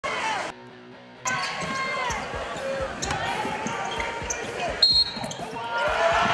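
Basketball game sound in a gym: a ball bouncing on the hardwood court, sneakers squeaking, and voices from players and crowd. Near the end comes a short, loud whistle blast.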